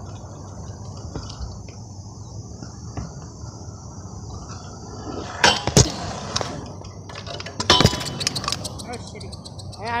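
Stunt scooter tricks on a skate park's hard surfaces: two sharp clacks about five and a half seconds in, then a rattling clatter of several quick knocks near eight seconds as the scooter comes down, over a steady low rumble.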